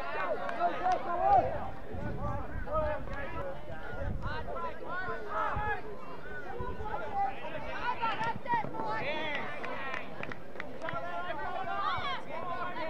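Several voices of spectators and players calling out and talking at once at a rugby league match, with a few louder shouts about a second in.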